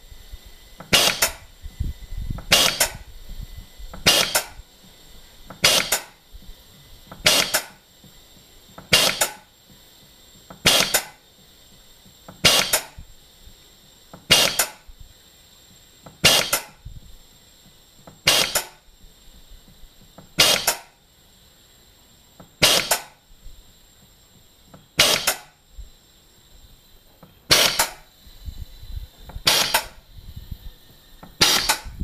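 MPS Technology C2 air-driven gas booster pumping, each piston stroke giving a short sharp burst of drive air, about one every one and a half seconds at first. The strokes come steadily slower, more than two seconds apart by the end, as the cylinder being filled builds pressure.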